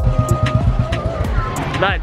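Street noise with a low rumble of traffic, under the last steady tones of background music, which fade about a second in. A voice comes in near the end.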